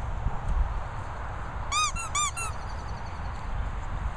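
A rubber squeaky dog toy squeezed and released twice, giving two quick pairs of short squeaks about two seconds in, over wind rumble on the microphone.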